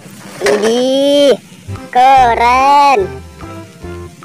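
Two drawn-out vocal exclamations, each about a second long, rising and then falling in pitch, over background music.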